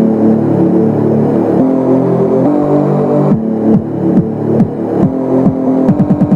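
Dubstep instrumental at 140 bpm: sustained synth bass chords, with several downward-gliding bass notes in the second half.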